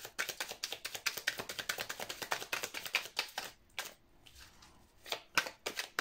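A tarot deck being shuffled in the hands: a quick run of papery card clicks that breaks off about three and a half seconds in, then a few more clicks near the end.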